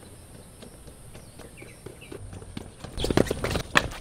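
Footsteps in sneakers on tiled outdoor stairs: light, scattered steps that turn into a louder, quicker run of steps with dull thuds in the last second.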